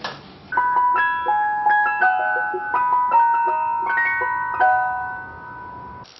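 An electronic chime tune in the style of an ice cream van jingle: a melody of bright, bell-like single notes, each ringing on, starting about half a second in.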